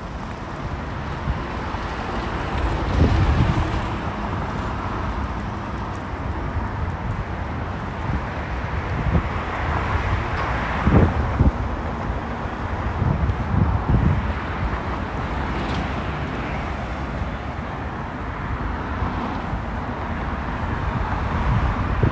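Road traffic on a wide city street, a steady wash of passing cars swelling and easing, with several gusts of wind buffeting the microphone.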